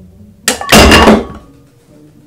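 A glued pine miter joint gives way under a stack of metal weight plates. About half a second in the plates crash onto the wooden workbench with a loud clang that rings briefly. The joint, glued with Titebond II after pre-sizing with diluted glue, failed at under 145 lbs of force.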